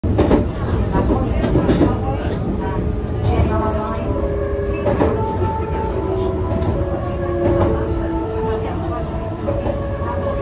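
Meitetsu 2200-series train's musical horn playing its melody, a run of held notes stepping up and down in pitch from about three seconds in, heard from inside a passenger car over the train's running rumble and wheel clatter.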